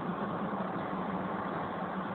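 Steady background noise with a faint low hum, unchanging in level.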